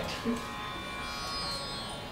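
Acoustic guitar chord ringing faintly as it dies away, with a short low vocal sound about a third of a second in.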